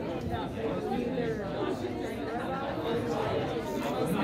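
A roomful of students talking in pairs all at once: a steady, overlapping hubbub of many voices.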